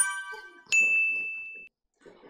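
Sound effects of a subscribe-button animation: a chime as the button is clicked, then a single bright ding a little later that rings out for about a second.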